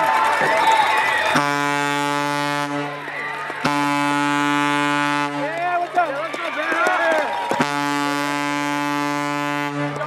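Three long blasts of a deep stadium horn sounding a touchdown, each held at one steady pitch for one and a half to two seconds, with voices in the gaps between blasts.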